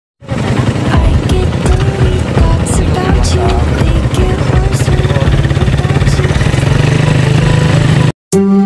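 Motorcycle engine running under way while carrying riders, a steady low sound with a fast even pulse.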